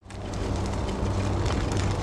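E-bike riding along a dirt path: steady rolling noise of the tyres on grit, with small clicks and a low steady hum underneath.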